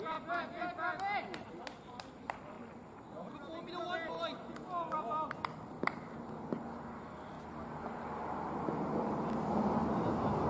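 Distant voices of cricket fielders calling across the field, broken by a few sharp clicks in the first half. In the last few seconds a rushing noise builds and grows louder.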